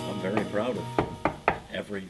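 A jazz band's held final chord fades out under a man's talk, broken by three sharp knocks about a second, a second and a quarter and a second and a half in.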